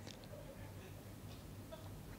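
Quiet room tone with a faint, steady low hum through the sound system.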